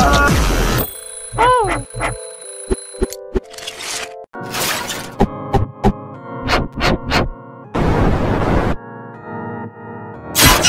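Distorted cartoon soundtrack: a choppy run of sound effects, with a wobbling pitched tone, several sharp clicks and short bursts of noise, over held electronic tones. A hiss lasting about a second comes near the end.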